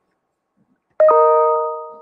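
A chime sounds once about a second in: a bright ding of several ringing tones that fades away over about a second.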